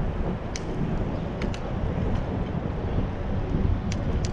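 Wind buffeting an action camera's microphone on a moving bicycle: a steady low rumble, with a few sharp ticks scattered through it.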